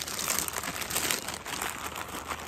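A plastic chip packet crinkling as it is handled, a dense run of quick crackles.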